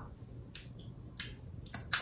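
A few soft, brief clicks in a quiet pause as a small glass perfume bottle is handled in the fingers.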